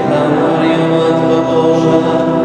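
A church congregation chanting prayers together in unison, the many voices holding steady pitched notes.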